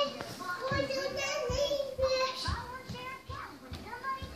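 A young child's voice chattering and calling out, with one held note about a second in, over a few low thumps.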